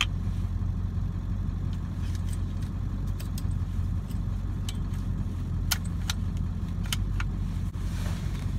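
Pickup truck engine idling steadily, heard from inside the cab, with a scattering of short, light metallic clicks and clacks as a dart rifle is handled and loaded with a tranquilizer dart.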